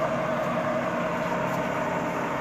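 Tree CNC knee mill running a program with no workpiece on the table: a steady machine hum with a steady mid-pitched whine.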